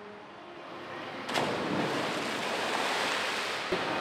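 A diver drops from the diving tower into the pool with a big splash about a second in, followed by a couple of seconds of water splashing and churning as the pool settles.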